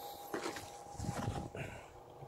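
Handling sounds of a soft zippered carrying case being opened: scattered light rustles and small knocks, with a short rasping patch near the end.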